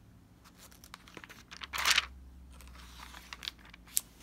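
Bible pages being turned by hand: a brief papery swish about halfway through, with small rustles around it and a sharp tick near the end.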